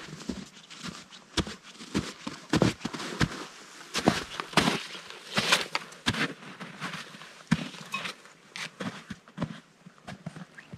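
Booted footsteps crunching in snow as a hiker climbs a steep trail, an uneven series of sharp crunches about one or two a second.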